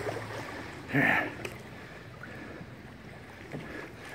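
A canoe paddle stroke through floodwater, one short splash about a second in, then faint water lapping around the canoe.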